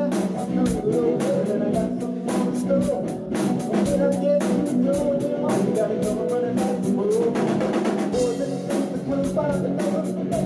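A live rock band playing an instrumental stretch of a soul-rock groove: electric guitar riffing over bass guitar and a drum kit keeping a steady beat of snare and cymbal hits.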